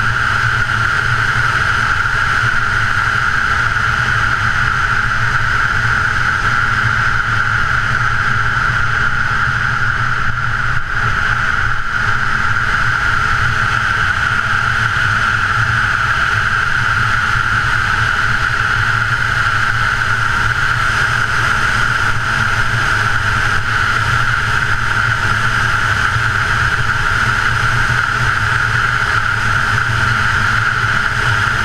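Steady rushing noise of travel at speed over snow on an action camera. It holds one unchanging pitch, with a low rumble under it, throughout.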